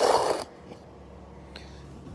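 Brief rustle of fabric rubbing on the microphone as the camera is handled against a cotton hoodie. After it, only quiet room tone with a faint low hum.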